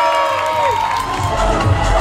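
Crowd of children screaming and cheering, with many held high-pitched screams that break off less than a second in. About a second in, music with a steady thumping beat starts up under the crowd noise.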